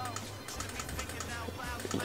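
Light, quick clicks of a laptop keyboard being worked, a rapid scatter of taps while colours are picked in a drawing program.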